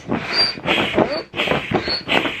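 Air pump inflating an air mattress: rhythmic strokes of rushing air, with a short high squeak on each stroke, about three in two seconds.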